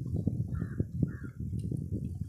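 A bird giving two short, harsh calls about half a second apart, over a low, uneven rumble on the microphone.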